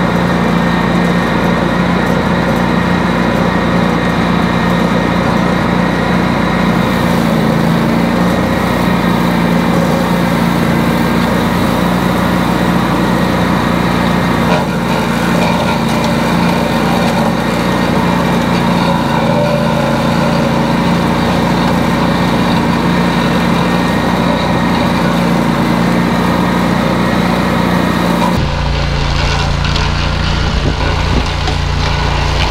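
Ventrac tractor running with its Tough Cut brush-cutter deck engaged, a loud steady drone as it mows through overgrown brush and tall grass. About two seconds before the end the sound changes suddenly to a lower, duller rumble.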